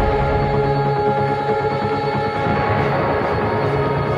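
Background music of long held notes over a dense low bed; the held notes shift about two and a half seconds in.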